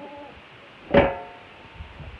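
A metal drum's lid closed onto the barrel about a second in: one sharp clank that rings briefly before fading.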